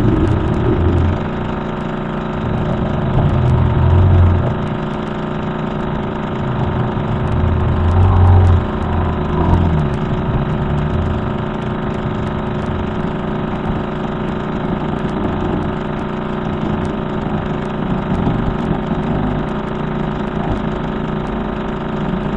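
Radio-telescope signal played back as audio: a steady drone of many layered tones over static hiss, with deeper surges about four and eight seconds in. It is presented as a strange RF signal from the direction of comet Elenin.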